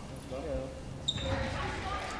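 Goalball play on a sports-hall floor: a low thud of the ball on the floor about half a second in and a short high ping about a second in, with faint voices in the hall.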